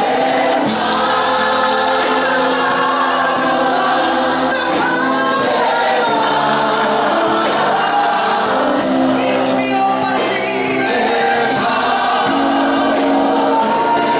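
Live gospel singing: a woman leads on a microphone with a choir of backing singers and electronic keyboard accompaniment, steady and loud throughout.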